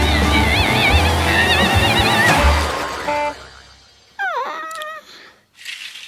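Cartoon soundtrack: lively music with a pulsing bass and warbling high notes, fading out about three to four seconds in. Then a short squeaky tone that dips and rises in pitch, and a brief whoosh near the end.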